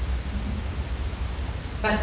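Steady low hum and faint hiss of background noise in a short pause between sentences, with a woman's voice resuming near the end.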